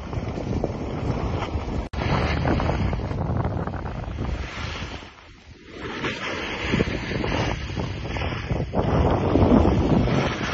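Wind rushing and buffeting on a phone microphone during a descent down a snow slope, mixed with the hiss of sliding over snow. The noise drops out for an instant about two seconds in and eases off briefly around the middle.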